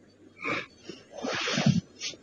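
Marker pen scraping across a whiteboard in two strokes: a short one about half a second in and a longer one lasting most of the second half.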